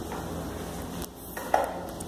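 Handling noise from a phone being moved and turned in the hand, with a short knock about one and a half seconds in.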